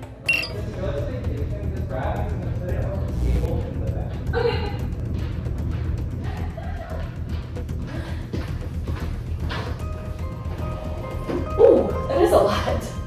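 Background music playing steadily, with faint indistinct voices under it.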